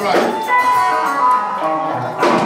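Live gospel band music with a chord held and ringing from about half a second in.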